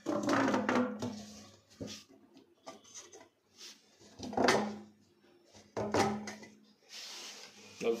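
Flexible corrugated plastic sink waste hose being handled and pushed into a floor drain: a few short bursts of plastic rubbing and scraping, the loudest about a second in, near the middle and near six seconds.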